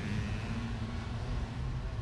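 Low, steady city street ambience: a rumble of traffic with no distinct events.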